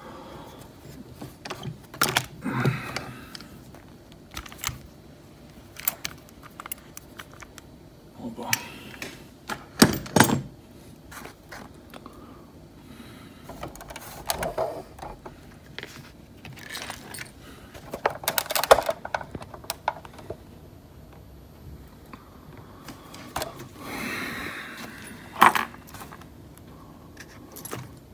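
Scattered, irregular metallic clicks, clinks and knocks as a Tesa T60 lock cylinder is taken from a small bench vise and handled among metal lockpicking tools and parts.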